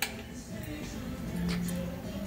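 A sharp click as the Mitsubishi PLK-G2516 pattern sewing machine's power is switched on, then background music with a steady low tone.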